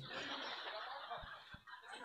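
Faint laughter and chuckling from a seated audience, dying away after about a second.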